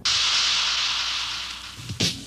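A sudden burst of hissing noise that fades away over about two seconds.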